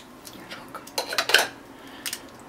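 A small metal-tipped utensil clicking and scraping against a plastic bottle and the slushy frozen cola inside it, in a quick cluster of sharp scrapes about a second in.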